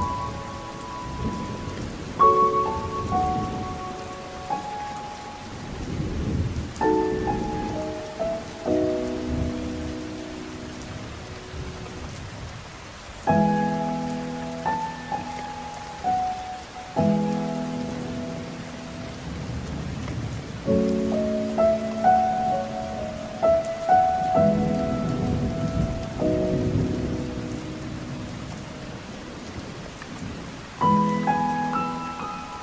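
Slow solo piano playing sustained chords and a gentle melody over steady heavy rain, with low rolling thunder underneath.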